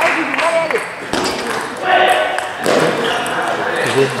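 Table tennis ball clicking off bats and the table during a rally, with voices calling out in the hall.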